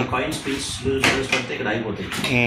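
A few sharp plastic clicks and knocks from the drain-filter cover at the base of an IFB front-loading washing machine as it is handled, under a voice talking.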